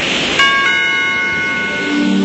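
A bell-like chime in the soundtrack music: a few bright, held tones struck about half a second in and ringing steadily. A lower music bed comes in near the end.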